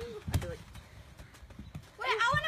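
A red rubber gaga ball struck in play, giving one sharp thud about a third of a second in, then a few faint knocks. A short vocal exclamation comes at the very start.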